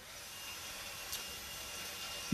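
A steady hiss of noise, rising a little at the start, with one faint tick about halfway through.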